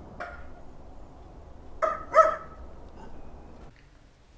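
A dog barking: a faint bark just after the start, then two loud, short barks in quick succession a little after halfway. A steady background noise runs beneath and cuts off suddenly near the end.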